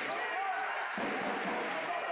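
A basketball bouncing on the court floor as it is dribbled, over indistinct voices echoing in a large sports hall.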